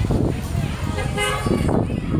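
Several young people's voices shouting and talking at once, with a short car-horn toot a little over a second in.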